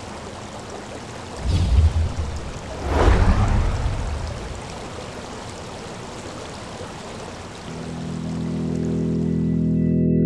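Rushing water with two heavy splashes, the first about one and a half seconds in and the second about three seconds in. Sustained organ chords come in near the end and swell.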